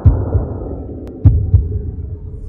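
Heartbeat sound effect: deep, muffled double thumps, the pairs about 1.2 seconds apart, over a low rumble.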